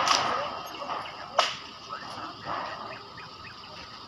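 A single sharp crack about a second and a half in, over a background of indistinct voices and noise.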